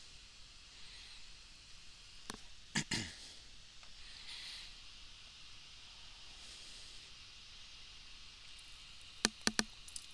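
Mouse clicks over a faint steady hiss: one a little past two seconds in, two louder ones close together just before three seconds, and a quick run of three near the end.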